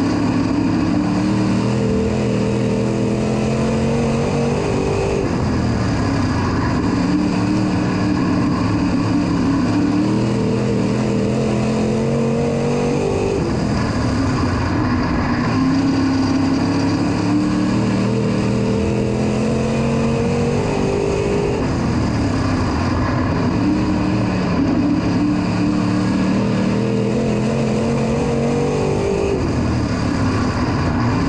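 A dirt track race car's GM 602 crate small-block V8, heard from inside the cockpit at racing speed. Its pitch climbs down each straight and drops as the throttle lifts for the turns, in a cycle of about eight seconds, four times over.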